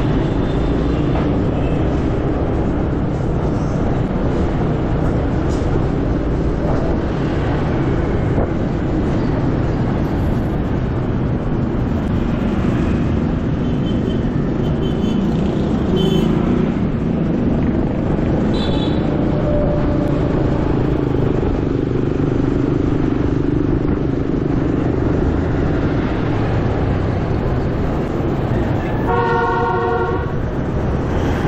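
A motor scooter's engine runs steadily as it rides through dense street traffic. Short vehicle horn toots come a few times around the middle, and a longer horn sounds near the end.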